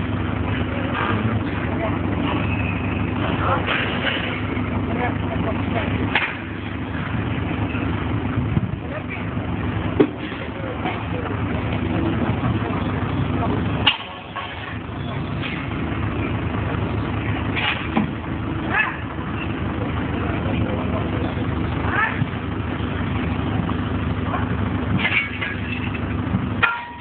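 Heavy diesel engine of a demolition excavator running steadily, with a few sharp knocks and clanks.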